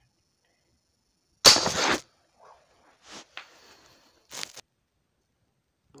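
Crosman break-barrel spring-piston air rifle firing a heavy .177 lead pellet point-blank into a small die-cast steel toy car: one loud sharp shot and impact about one and a half seconds in, fading over about half a second. A few quieter knocks follow about three and four and a half seconds in.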